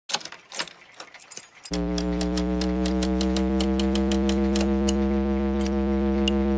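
Intro sound design for a loading screen: a few irregular clicks, then about two seconds in a steady low hum starts suddenly, with quick regular ticking over it, about five ticks a second.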